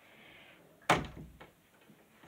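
A single sharp bang about a second in, dying away quickly, followed by a fainter knock shortly after.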